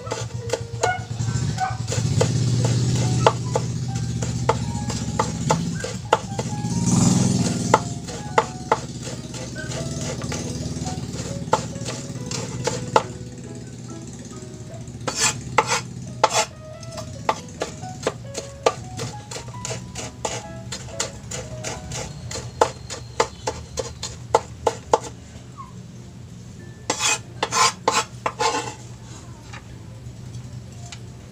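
Kitchen knife chopping on a wooden cutting board, mincing garlic: a run of sharp, uneven taps, with quick bursts of chopping about halfway through and again near the end.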